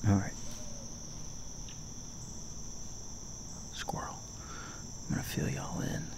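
A steady, high-pitched chorus of insects chirring in the woods at first light.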